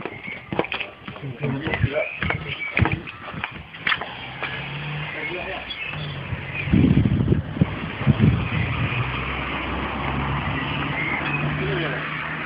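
A car engine running steadily, its low hum settling in about four seconds in, with voices in the background. A string of knocks and clicks fills the first few seconds.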